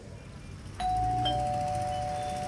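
Two-tone doorbell chime ringing once. A higher note sounds about a second in, then a lower note about half a second later, and both ring on.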